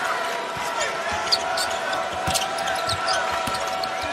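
A basketball bouncing on a hardwood court over a steady arena crowd murmur, with short, high sneaker squeaks from players moving on the floor.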